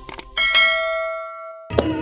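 A single bright bell-like chime, struck once, rings for over a second and is then cut off abruptly. Javanese gamelan music starts with ringing metallophone strikes just before the end.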